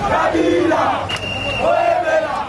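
A large crowd on the march, shouting and chanting together in long raised cries. A high, shrill held note cuts in about a second in.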